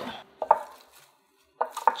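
Kitchen utensil sounds: a sharp knock about half a second in as chopped herbs are scraped off a plastic cutting board into a bowl, then, after a moment of dead silence, a few quick taps of tongs in the bowl near the end.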